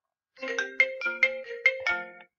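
A phone ringtone playing: a quick melody of chiming notes, about five a second, starting a moment in.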